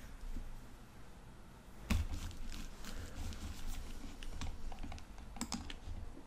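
Irregular light clicks and taps on a tablet's glass screen while drawing, starting about two seconds in, with a quick cluster of clicks near the end.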